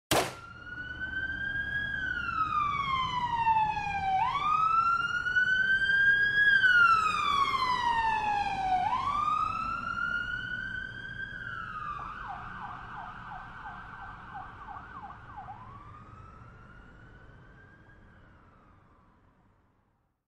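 Emergency vehicle siren wailing slowly up and down, switching about twelve seconds in to a fast yelp, then back to one last wail. It grows louder and then fades steadily away. A brief sharp knock comes right at the start.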